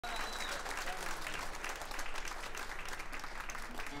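Live audience applauding, with a few voices among the clapping.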